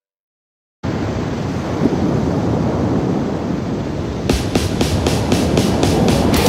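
Silence for under a second, then a death metal track starts abruptly as a loud, dense wall of distorted guitar. About four seconds in, steady drum hits join at about four a second.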